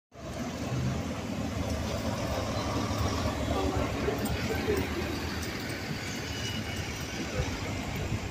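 Double-decker bus engine running low and steady as the bus drives close past, over general street traffic noise.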